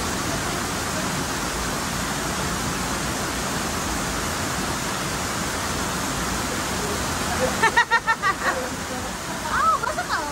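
Waterfall pouring into a rock canyon pool: a steady rush of water mixed with people's voices. Near the end a voice calls out in a quick run of short repeated bursts, followed by a rising-and-falling call.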